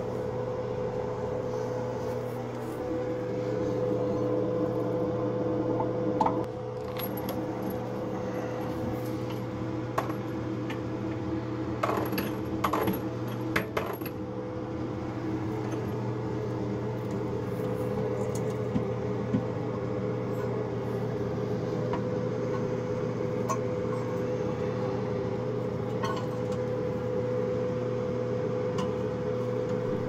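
Scattered metallic clinks and scrapes of a screwdriver and locking pliers working a toilet tank-to-bowl bolt, with a cluster about 12 to 14 seconds in, over a steady hum.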